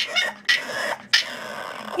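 French bulldog puppy protesting being sent to bed with breathy, grumbling vocal sounds: a couple of short ones, then two longer ones of about half a second and nearly a second.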